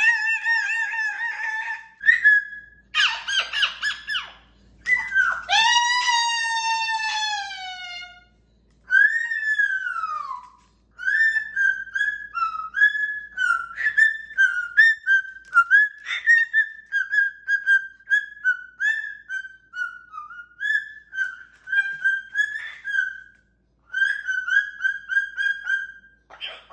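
Moluccan cockatoo whistling a tune: a few long sliding whistles, one falling in pitch, then a long run of short, quick notes bouncing around one pitch.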